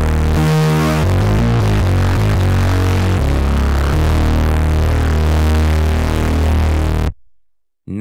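A layered software-synth patch, the Synth Anthology 4 Colossus saw and Virus C 'Ultra Funky' patches, driven through Falcon's Analog Crunch distortion on its Honest setting, plays a gritty, crunchy low riff with a slightly glitchy feel. The notes change quickly for the first few seconds, then one long low note holds before the sound cuts off suddenly about seven seconds in.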